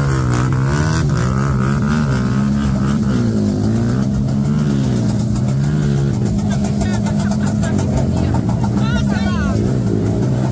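Motorcycle engine revving repeatedly, its pitch swelling and falling about once a second, over a crowd's voices.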